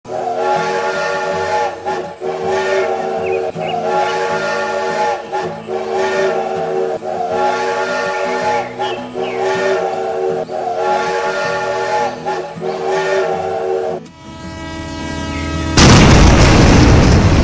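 A looping steam-train whistle and chugging sound, the same pattern repeating roughly every one and a half to two seconds. About two seconds before the end it gives way to a rising tone, and right at the end a sudden loud crash-like burst breaks in.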